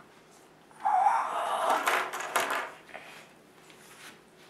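A boy's pained, breathy vocal outburst lasting about two seconds, starting a second in, as a wooden clothespin clamps onto his ear.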